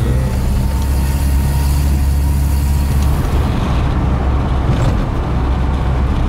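Car engine and road noise heard from inside the cabin while driving: a steady low rumble, with a hiss over it that drops away about halfway through.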